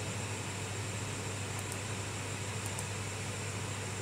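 Steady low hum and hiss of room background noise between sentences, with a couple of faint clicks near the middle.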